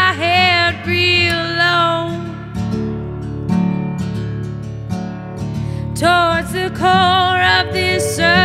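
A soul song: a woman sings over instrumental backing. Her voice drops out after about two and a half seconds, leaving the band alone, and comes back about six seconds in.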